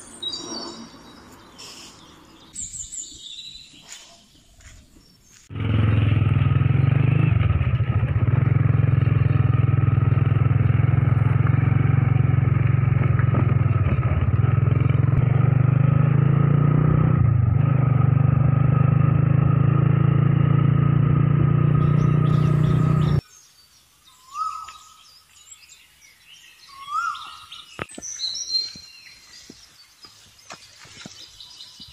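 Small motorcycle engine running steadily on the move, a loud low drone whose pitch wavers a little, cutting in suddenly a few seconds in and cutting off suddenly near the end. Birds chirp before and after it.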